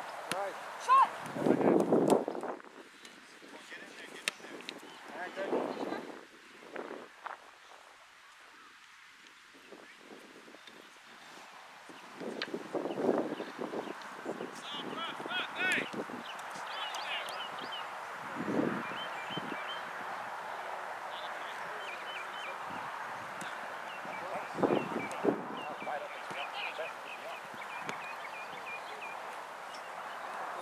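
Indistinct shouts and calls from players and spectators at an outdoor soccer game, coming in short scattered bursts over a steady background hum of the field.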